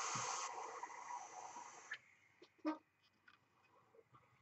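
A long draw on a mechanical mod with a rebuildable dripping atomizer: a steady hiss of air and vapour pulled through the drip tip over the firing sub-ohm flat-wire coil, a little softer after about half a second and stopping about two seconds in.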